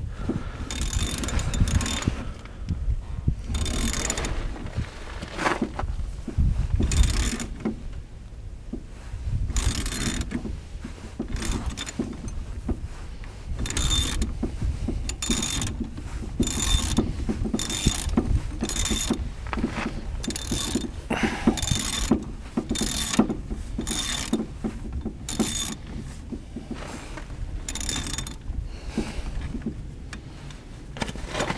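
Ratchet wrench clicking in short bursts, about one or two a second, as it turns the threaded centre rod of a three-jaw gear puller clockwise, pressing a drive axle out of a steering knuckle.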